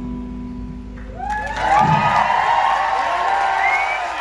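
A live band's last chord ringing out and fading, then the audience breaking into cheering and applause about a second and a half in, louder than the chord.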